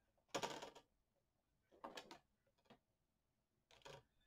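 Mostly quiet, with a few short scratching and rustling sounds of a clear grid ruler and pencil being handled on patterned paper while a measurement is marked. The loudest comes about a third of a second in.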